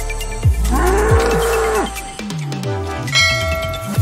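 Intro sting: a bull's bellow sound effect, rising and then held for about a second, over deep electronic bass with falling pitch drops. A bright bell-like chime follows near the end.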